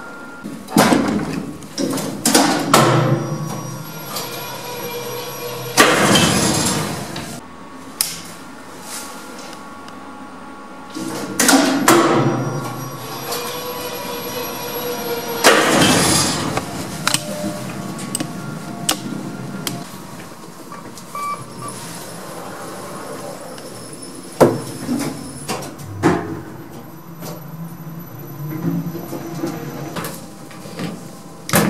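KONE EcoDisc lift in operation: repeated clicks and clunks, with three loud rushing surges of a second or so, about six, twelve and sixteen seconds in.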